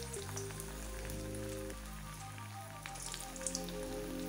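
Battered capsicum Manchurian balls deep-frying in hot oil in a kadai: a steady, fine crackling sizzle. Soft background music with sustained notes plays throughout.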